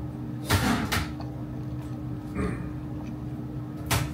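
Plastic wrapping on a musubi being handled: a loud crinkle about half a second in, a softer one later and a sharp click near the end, over a steady low room hum.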